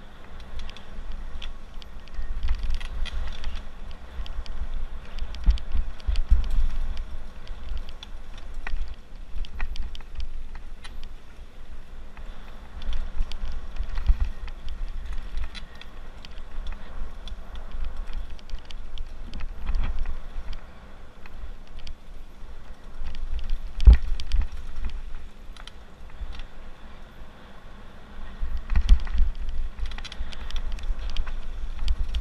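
Mountain bike running fast down a dirt trail: wind buffeting the microphone with a rumble that rises and falls, tyres on dirt and gravel, and frequent clicks and rattles from the bike over bumps. A sharp knock about three-quarters of the way through is the loudest moment.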